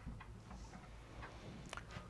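A few faint, light clicks in an otherwise quiet room, spaced irregularly across about two seconds.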